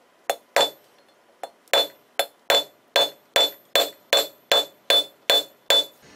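Hand hammer striking a red-hot steel bar on an anvil while drawing out its end: two blows, a short pause, then a steady run of about four blows a second, each with a short bright ring.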